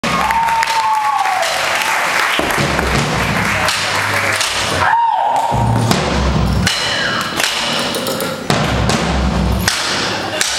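Live band music on stage, with heavy thudding low drum beats and a high tone that glides down and back up a couple of times.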